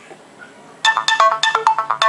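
Incoming text-message notification tone from a Samsung Galaxy S II's speaker: a quick run of bright electronic chime notes starting about a second in.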